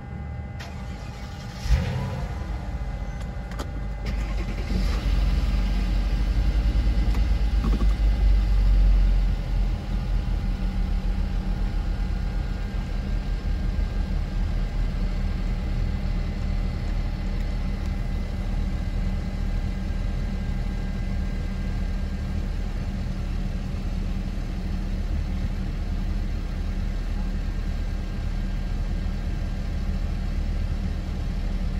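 Car engine heard from inside the cabin, starting with a sudden jolt about two seconds in. It runs louder with a low rumble for several seconds, then settles to a steady hum.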